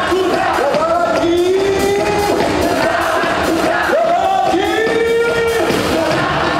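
Live band music with a voice singing a run of long held notes, each sliding up into pitch, over audience noise.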